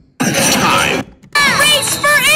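A loud crashing, shattering sound effect lasting under a second, followed by a short stretch of music with sliding tones.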